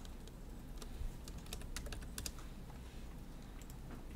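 Computer keyboard and mouse clicks: a few scattered light clicks, irregularly spaced, over a faint steady low hum.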